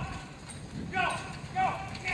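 A pony's hooves beating on dirt as it trots a carriage through an obstacle, with a high-pitched squeal that recurs about every half second and stands out above the hoofbeats.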